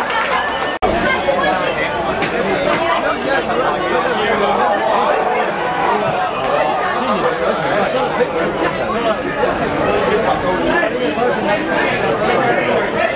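Crowd chatter: many spectators talking over one another at a football match, with no single voice standing out. The sound drops out briefly just under a second in.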